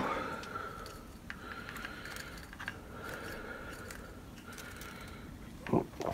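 Quiet room tone with a few faint clicks and rustles from a small plastic tub being handled, over a faint high steady whine that comes and goes.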